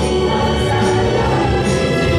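A song performed live over a PA, with a choir of voices and band accompaniment, sustained and loud, in a gospel-like style.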